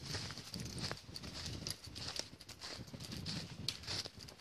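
Footsteps crunching and rustling through deep dry fallen leaves at a steady walking pace, about two steps a second.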